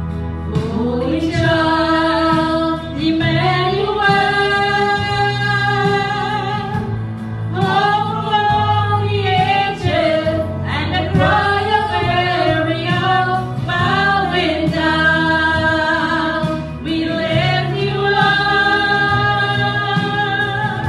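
A worship song: a small group of singers, women's voices to the fore, singing over sustained keyboard chords, coming in suddenly at the start.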